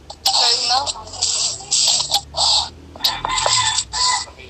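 Speech: people talking in short, loud bursts.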